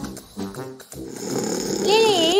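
A snore, most likely an added cartoon-style effect, starting about halfway through as a rasping breath and breaking into a wavering, whistle-like tone near the end.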